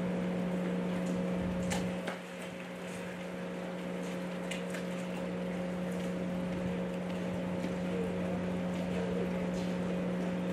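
A steady low hum with a fainter higher tone over an even background hiss, with a few faint clicks.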